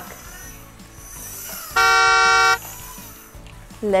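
A single steady truck-horn honk, a little under a second long, about two seconds in, over faint background music.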